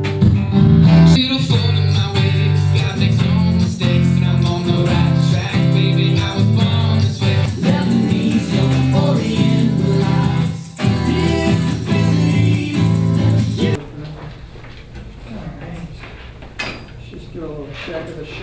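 Strummed acoustic guitar music playing loudly. It cuts off suddenly about three-quarters of the way through, leaving quieter room sound.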